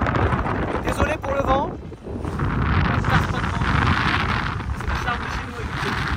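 Wind buffeting the microphone in a steady low rumble, with small waves washing onto a sandy beach, the surf hiss swelling and fading. A brief voice sound comes about a second in.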